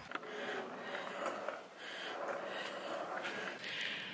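Faint rustling and handling noise in a small room as the camera is picked up, with soft, irregular swells and no steady tone.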